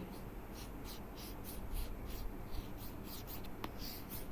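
Stylus scratching across a tablet screen in a run of short strokes as straight line segments are drawn, with one sharper tap near the end, over a faint steady hum.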